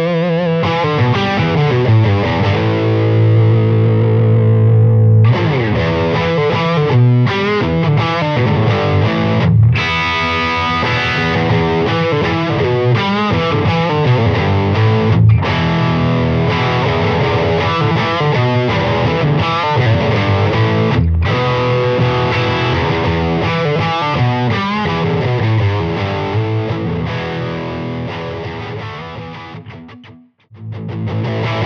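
Electric guitar played through a Bad Cat Black Cat tube amp with the gain turned all the way up, heavily overdriven. It plays riffs and chords, with a chord left ringing from about two to five seconds in and short breaks between phrases. The playing trails off near the end.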